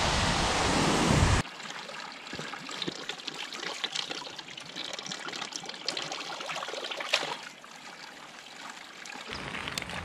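Waterfall rushing loudly for about the first second and a half, cut off abruptly. Then the steady trickle and splash of water running from a spout into a wooden log trough fountain.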